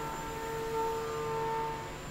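SYIL X7 CNC vertical mill cutting a hex profile with an end mill: a steady hum of several even, ringing tones from the spindle and cutter in the metal, which stops just before the end.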